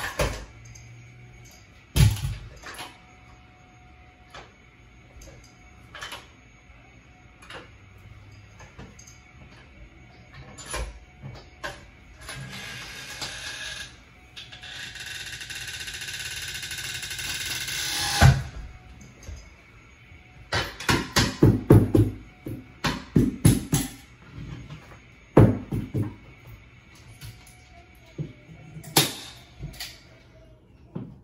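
Red carpet power stretcher being moved and set. Sharp metal knocks come at the start, then a few seconds of steady scraping noise build to a loud clack. A quick run of clicking knocks follows, then two more sharp knocks near the end.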